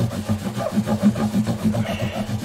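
Cloth rubbed quickly back and forth along a guitar fingerboard, working in boiled linseed oil, making a low, uneven rumble that pulses with the strokes.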